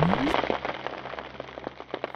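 A dense crackling patter of many small clicks, like rain on a surface, that thins out and fades. It opens with a short rising sweep.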